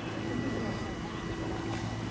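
A steady motor hum under a continuous background haze, with faint distant voices.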